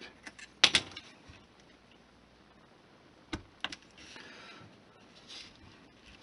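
Small hand tools, a pencil and a hobby knife, tapping and clicking on a cutting mat in a few sharp clicks, then two short faint scrapes near the end.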